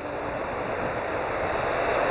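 Road traffic noise: a passing vehicle's steady rush, growing slowly louder.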